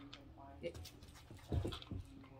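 A Doberman giving a short whine, with a low thump about one and a half seconds in as it moves off.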